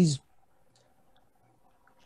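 A man's voice finishing a word, then a pause of near silence with only a faint steady hum and a few faint ticks.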